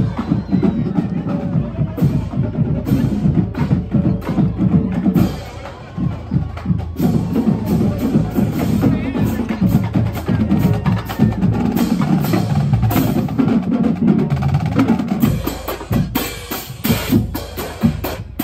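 Marching band playing a merengue medley: brass over a steady beat of marching bass drums, snares and cymbals. The music eases briefly about six seconds in, and a run of sharp drum and cymbal hits comes near the end.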